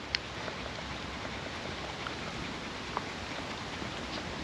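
Quiet outdoor background: a steady, even hiss, with a tiny click just after the start and another about three seconds in.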